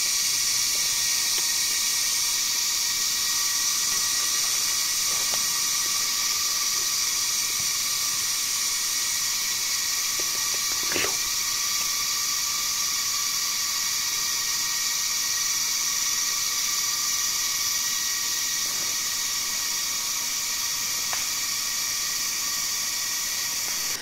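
Steady high-pitched drone of an insect chorus in forest, several pitches held without a break, with a faint tick or twig snap about eleven seconds in.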